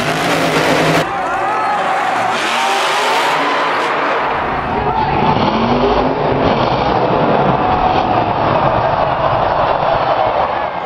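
Monster truck engines revving over a dense crowd noise in an arena, with the pitch rising and falling. The sound changes abruptly about a second in and again near five seconds, where the clips are cut together.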